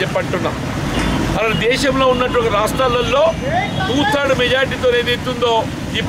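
A man speaking continuously in a loud, steady voice, with a low rumble of street traffic beneath that swells briefly about a second in.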